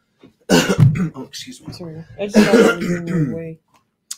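A man clearing his throat harshly, followed by a wordless voiced sound that falls in pitch and stops a little before the end.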